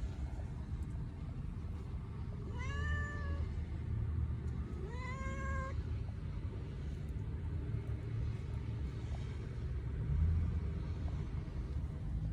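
Domestic cat meowing twice, two short calls that rise in pitch and then hold, about two seconds apart, over a steady low rumble.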